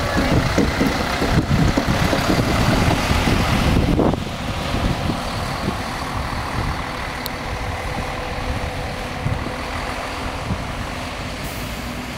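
Touring coaches driving off: a loud rumble of diesel engines and tyres while a coach passes close, dropping suddenly about four seconds in to a quieter, steady rumble that fades as they pull away.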